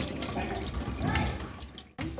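Water running from a tap into a stainless steel sink, splashing over a small child's hands as they are washed; it fades away just before the end.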